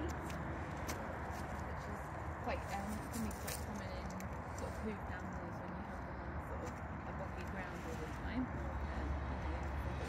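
Indistinct voices in the background over a steady low rumble, with a few sharp clicks in the first few seconds.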